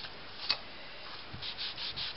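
Black ink pad rubbed over card: quiet scuffing strokes, with one light tap about half a second in.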